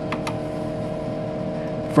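Steady multi-tone hum of a running Tektronix 4054A vector graphics computer, with two light clicks shortly after the start.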